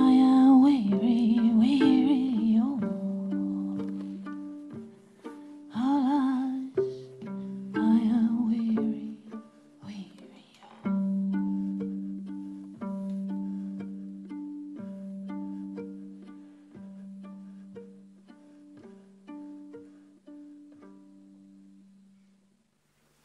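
Fiddle played pizzicato, a run of plucked notes over a held low note. A wordless sung line with vibrato joins in for the first few seconds and again about six seconds in. The plucked notes then thin out and fade away.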